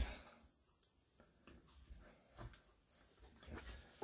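Near silence with a few faint, brief handling sounds as the strap of a leather axe sheath is fastened over the axe head.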